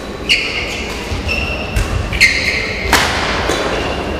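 Badminton rally: sharp racket hits on the shuttlecock about a second apart, mixed with short high squeaks and low thuds from the players' shoes on the court floor.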